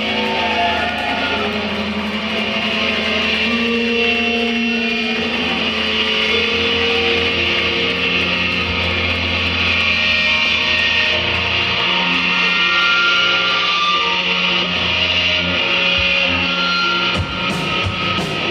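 Live indie rock band playing at full volume: electric guitars, electric bass and drums, with no vocals, heard through a phone mic in the room. The sound dips briefly near the end.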